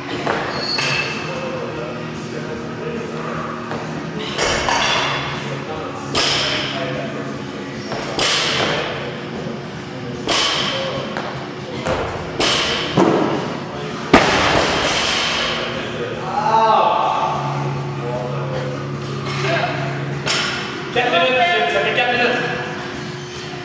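Repeated box jumps: feet thud onto a wooden plyo box and back down onto rubber gym mats, a landing roughly every two seconds. The sharpest, loudest bang comes about 14 seconds in.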